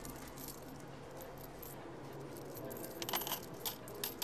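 Metal arcade game tokens clinking faintly as they are picked up off the floor by hand: a few light clicks early on, then a quicker cluster of sharper clinks about three seconds in.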